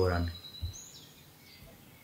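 A man's voice trails off in the first half second, then quiet room tone with a few faint, high chirps.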